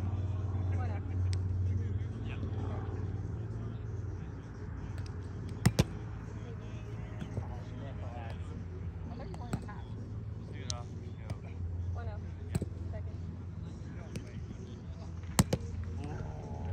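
Sharp slaps of play in a roundnet game, a hand hitting the ball and the ball striking the net, coming in two quick pairs about ten seconds apart with a few lighter taps between. Behind them run a steady low rumble and faint voices.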